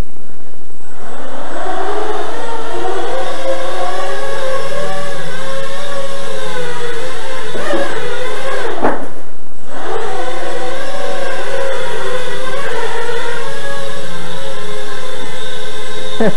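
Four small 2840kv brushless motors with three-blade 6x3 props on a scratch-built quadcopter, inside a foam flying-saucer shell, whining as they strain to lift it. The motors spin up about a second in, with the pitch wavering as the throttle changes. They cut back briefly a little past halfway, then rise again.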